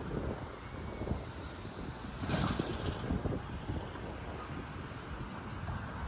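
Outdoor wind buffeting a handheld phone microphone, an uneven low rumble, with a louder swell of noise about two and a half seconds in.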